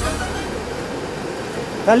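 Steady rushing noise of a stove burner running under a pan.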